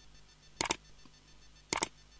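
Two computer-mouse click sound effects about a second apart, each a quick double click: the clicks of an animated subscribe-button overlay pressing 'subscribe' and then the notification bell.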